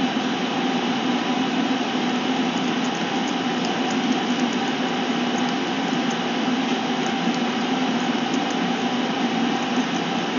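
Steady machine hum with an even hiss, like a running fan or air conditioner, holding level throughout, with a few faint ticks in the middle.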